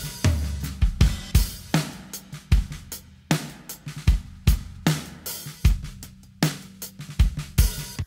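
Soloed acoustic drum kit recording playing a steady groove of kick, snare, hi-hat and cymbals, with a chamber reverb on the snare that makes it punchier and a little verby.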